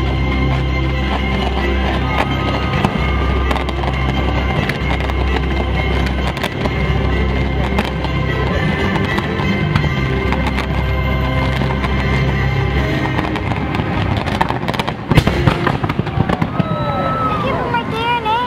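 Fireworks display: many bangs and crackles from exploding shells over steady, loud orchestral show music, with a cluster of louder bangs about fifteen seconds in.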